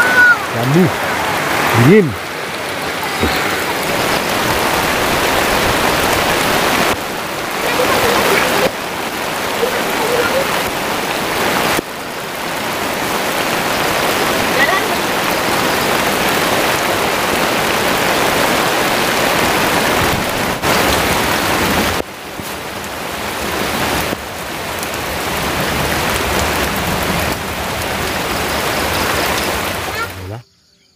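Heavy rain falling steadily, a loud continuous hiss. Its level steps up and down abruptly several times.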